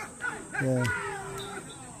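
Mostly speech: a man's voice says a short "ye" (yes), followed by a fainter, higher sound that falls in pitch and fades out.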